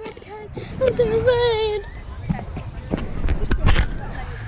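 A girl's voice close to the microphone, with one drawn-out, wavering high call about a second in and shorter vocal sounds around it. Low rumbles and knocks near the end.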